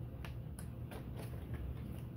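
Faint handling of cardstock: a few soft ticks and rustles as cut-out paper hearts are lifted from the sheet, over a steady low hum.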